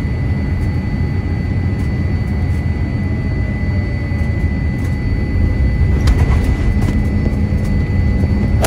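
Jet airliner cabin noise beside the wing of a Boeing 787-8: a steady low rumble of its Rolls-Royce Trent 1000 engines and the airflow, with a thin steady whine above it.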